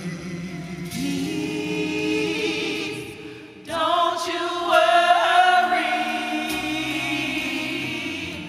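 Gospel praise team of several singers singing together in long held notes; a little under four seconds in, a higher, louder voice line comes in over the lower voices.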